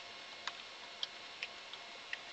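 Computer keyboard keys clicking as a word is typed: four faint, separate key clicks, unevenly spaced about half a second apart.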